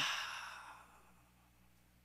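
A man's long breathy exhale into a microphone, fading out over about a second, followed by a faint steady hum from the sound system.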